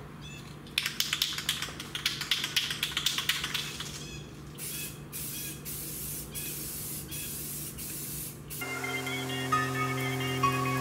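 Aerosol can of primer shaken, its mixing ball rattling rapidly, then sprayed in a series of short hissing bursts. Background music comes in near the end.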